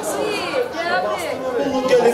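Chatter of several voices talking at once, with no other sound standing out.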